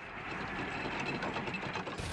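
A steady, fast mechanical rattle with no speech over it.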